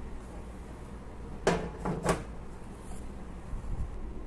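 Plastic food-dehydrator trays sliding along their runners: two short sliding knocks about a second and a half and two seconds in, over a steady low hum.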